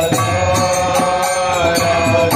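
Devotional kirtan: a sung Hindu chant with held notes over a steady percussion beat, about three strikes a second.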